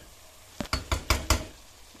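Wooden spoon knocking against the pot while stirring: a quick run of about six sharp knocks starting a little over half a second in.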